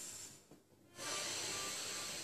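A person's deep diaphragm breathing: a breath trails off early, then a long, steady deep breath starts about a second in, filling the belly.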